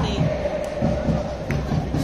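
Crowd of football supporters in the stands singing and chanting, with one long held sung note and a regular low beat underneath.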